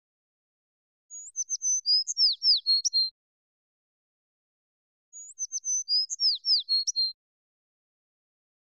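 A songbird's song: a phrase of about two seconds of quick high chirps and short downward-sliding whistles, sung twice in exactly the same form with about two seconds of silence between.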